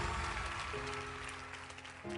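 Soft instrumental accompaniment of held chords growing quieter, moving to a new chord under a second in.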